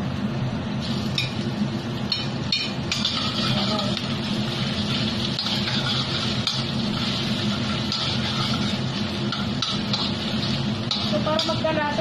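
Pork pieces frying in hot pork lard in a steel wok: a steady sizzle that sets in about a second in as the meat goes into the fat, with a spatula clinking and scraping against the pan as it is stirred.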